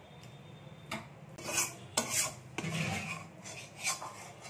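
Metal spatula scraping the inside of a metal kadai, about six separate scraping strokes starting about a second in, as the last of the cooked vegetables are scraped out of the pan.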